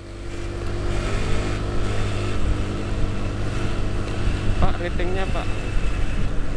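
Honda Vario scooter engine running steadily on the move, with road and wind noise on the action-camera microphone; the sound fades in over the first second. A short voice is heard near the end.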